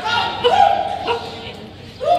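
A dog barking excitedly in a few high, ringing barks, the longest and loudest about half a second in.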